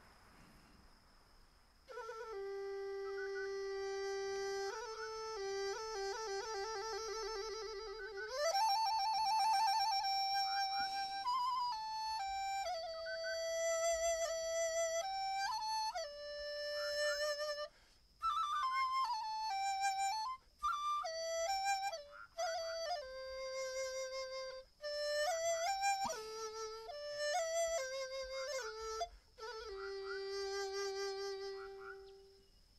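Solo Chinese bamboo flute (dizi) playing a slow melody of long held notes, starting about two seconds in. The opening notes waver with vibrato, and short breaks fall between the phrases.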